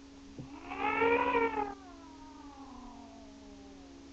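A drawn-out, meow-like call, about a second long, rising and then falling in pitch, followed by a fainter tone that glides slowly downward. A steady low hum runs underneath.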